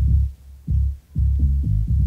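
House music from a DJ mix, stripped down to a low kick drum and bassline with no hi-hats or higher parts, pulsing about twice a second.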